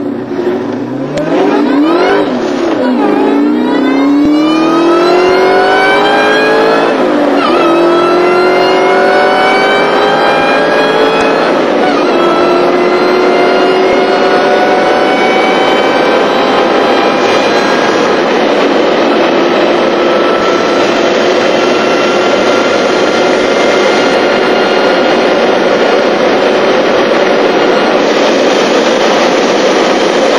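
2003 SVT Mustang Cobra's supercharged 4.6-litre V8 at full throttle, heard from inside the cabin, with engine note and supercharger whine rising through the gears. There are gear changes about seven and twelve seconds in, and after them the pitch climbs more slowly as speed builds.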